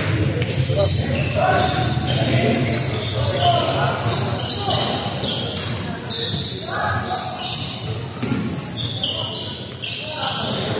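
A basketball bouncing on a hardwood court in a large hall, several separate thuds, over steady background chatter from players and onlookers.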